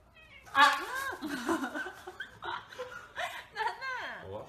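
A kitten meowing: a series of short, high calls that rise and fall in pitch, starting about half a second in.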